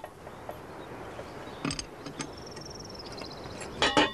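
Quiet outdoor ambience with a few light clicks a little under halfway in, then a cricket chirring in a thin, high, pulsing trill for about a second and a half.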